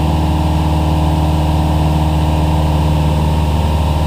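Cessna 172's piston engine and propeller droning steadily inside the cabin, holding power through a steep turn.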